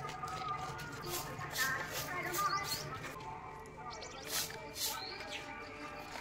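A hand scooping and scraping wood ash out of a hearth stove's fire pit into a plastic basin: a few short, gritty scrapes and rustles.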